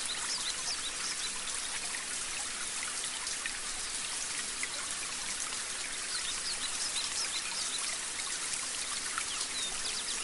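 Water spraying from a garden hose onto plants: a steady hiss. Short bird chirps are scattered through it.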